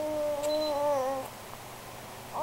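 A baby's long, drawn-out vocal sound on one slowly falling pitch, which stops about a second in.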